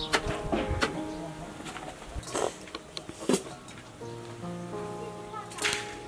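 A wooden pestle thudding into a stone mortar as grain is pounded by hand: several uneven strikes over steady background music.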